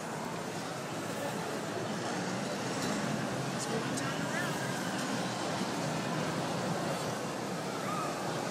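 Steady outdoor background noise of a theme park heard from high up, with faint indistinct voices and a brief faint squeak about four seconds in.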